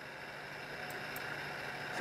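Faint steady background noise with a low hum, slowly growing a little louder, and two faint ticks about a second in.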